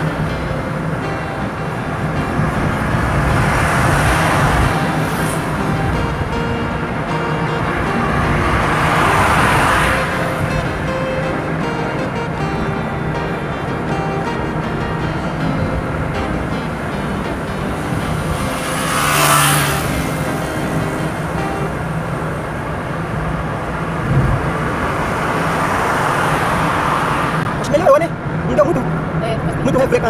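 Road and engine noise heard from inside a moving car, with the rush of passing traffic swelling and fading several times, loudest a little before two-thirds of the way through.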